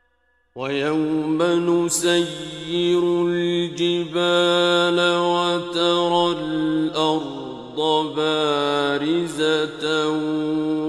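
A solo male voice reciting the Qur'an in the melodic mujawwad style, coming in about half a second in and holding long, ornamented notes that glide between pitches, with a few brief breaks for breath.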